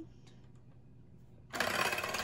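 Electric hand mixer switched on about one and a half seconds in, its motor whirring steadily as the beaters whisk raw eggs, milk and vanilla.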